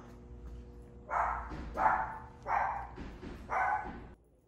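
A dog barking four times in quick succession, over a steady low hum.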